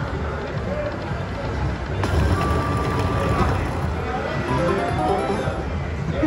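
Casino slot-machine din: electronic music and tones from an Aristocrat Lightning Link Tiki Fire slot machine spinning its reels, over background voices. A single electronic tone is held for about a second and a half, starting about two seconds in.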